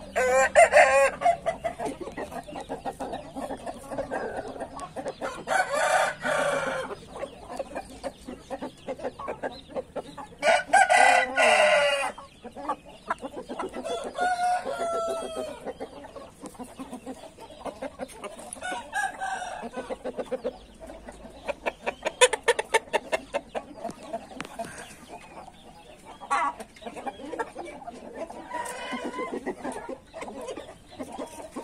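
Índio roosters crowing short crows, three loud ones of about a second each in the first twelve seconds, then softer calls and clucking. A run of quick clicks comes about twenty-two seconds in.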